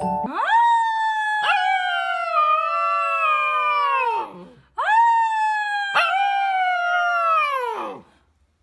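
A husky-type puppy howling: two long howls of about four seconds each, each rising sharply at the start and then sliding slowly down in pitch, with a short break between them.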